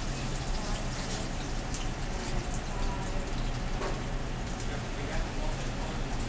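A piece of meat sizzling in hot oil in a small stainless steel frying pan, with a steady hiss and scattered small crackles and pops.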